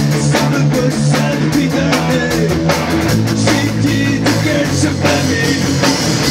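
Punk rock band playing live: electric guitars and a drum kit at a loud, even level, with a steady drum beat.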